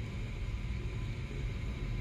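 Steady low background hum with a faint even hiss: room tone, with no distinct event.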